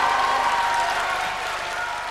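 A crowd applauding, the clapping swelling at the start and slowly fading toward the end.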